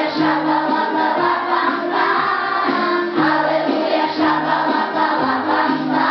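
A group of children singing a lively song together over a backing track with a repeating bass line.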